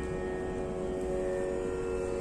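A steady drone of several held tones, unchanging through the pause in speech.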